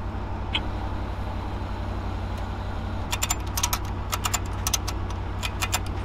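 Ford wrecker's engine idling steadily with a low rumble. In the second half a quick, irregular run of sharp clicks rises over it.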